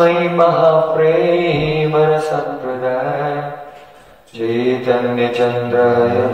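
A man chanting an invocation prayer in long held, melodic notes, one phrase breaking off with a short breath pause about four seconds in before the next begins.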